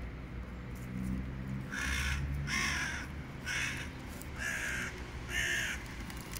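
A bird's harsh calls: five in a row, about a second apart.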